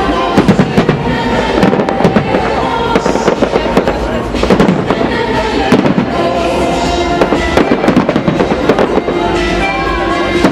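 Aerial firework shells bursting in a rapid barrage: many sharp bangs and crackles close together throughout.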